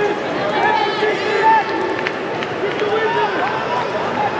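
Arena crowd at a wrestling match: many voices shouting and yelling over one another above a steady hubbub.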